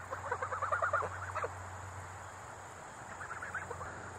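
Chickens clucking faintly: a quick run of short pitched notes in the first second and another brief run near the end, over a low steady hum.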